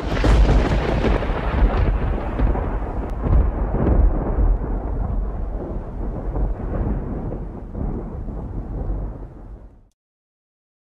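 A deep rumble, used as an intro sound effect, starts suddenly at full strength and slowly dies away, fading out just before the end.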